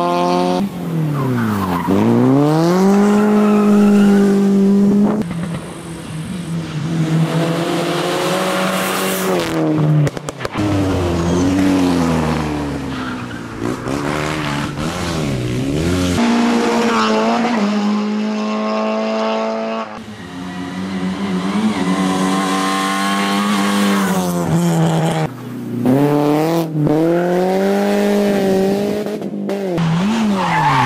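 Rally cars driven flat out through a special stage, one after another. Each engine revs hard and then drops sharply at gear changes and throttle lifts, with tyre squeal as the cars are pushed through the bends.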